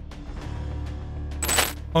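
Background music with a steady low drone, then a short, bright metallic transition sound effect with a high ringing shimmer about a second and a half in.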